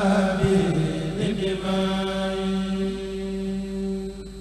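A group of men chanting a khassida, a Sufi devotional poem in Arabic, in unison. In the second half the voices settle into one long held note that slowly fades.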